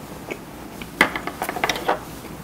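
Close-miked chewing of seafood: one sharp click about halfway through, then a quick run of crackling clicks from the mouth.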